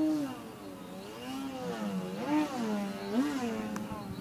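Motor and propeller of a 38-inch Slick 540 RC aerobatic plane in flight, its pitch rising and falling several times as the throttle is worked.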